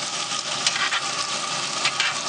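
Sauced chicken wings sizzling steadily in a carbon steel skillet on a hot pellet grill, with a steady hum under it. Metal tongs stirring the wings click against the skillet twice.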